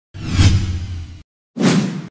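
Two whoosh sound effects from a TV news logo intro, each with a low rumble beneath it: the first lasts about a second, the second is shorter and comes near the end after a brief silence.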